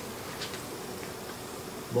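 Room tone between spoken sentences: a steady low hum with a soft hiss, and no speech.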